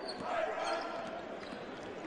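A basketball being dribbled on a hardwood court over a steady murmur of the arena crowd, with a faint voice calling out about half a second in.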